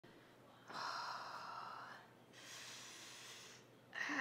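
A woman breathing out heavily twice, two long breathy sighs of over a second each, the first louder than the second.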